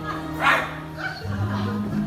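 A dog barks once, sharply, about half a second in, as part of film soundtrack audio, over steady low held music.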